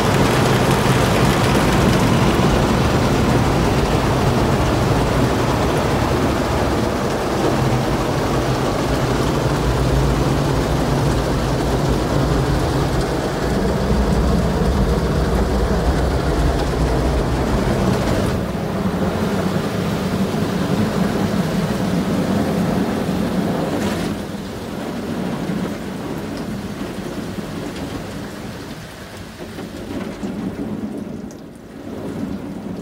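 Automatic gantry car wash working over a kei van, heard from inside the cabin: a loud, steady rush of spraying water and scrubbing over the body, with the machine's motors humming underneath. The low hum fades about two-thirds of the way through, and the wash gets quieter a little later.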